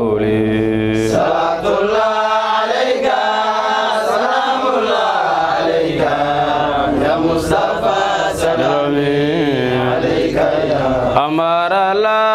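A man's solo voice chanting an Arabic devotional song in praise of the Prophet Muhammad through a microphone and PA, in long wavering held notes that rise and fall.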